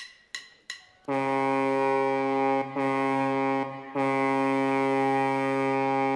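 A deep ship's horn sounding three long, steady blasts, after a few short high pings in the first second, as the opening effect of a dance routine's music track.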